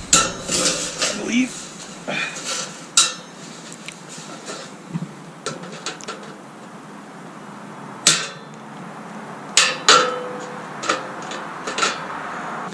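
Hand-held aviation tin snips cutting through a thin sheet-metal wall stud: a string of irregular sharp metallic snaps and crunches, the loudest about three, eight and ten seconds in.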